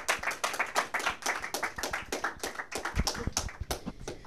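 Audience clapping: a dense run of many overlapping hand claps that dies away near the end.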